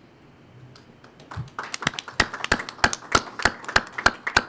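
Audience applauding at the close of a talk, starting about a second and a half in, with separate hand claps standing out.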